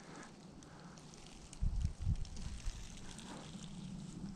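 Quiet outdoor handling noise: a faint crackling rustle, with a few dull thumps about a second and a half in.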